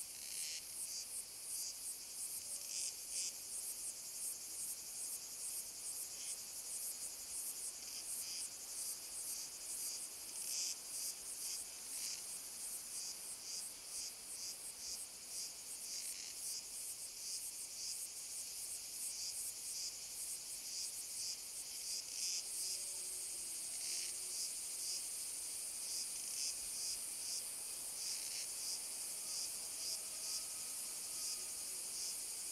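Insects chirping in a dense, fast-pulsing high-pitched chorus that runs on without a break. About two-thirds of the way through, a steady high buzz joins in.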